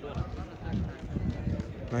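Men's voices talking, with footsteps of people walking on a rubber running track.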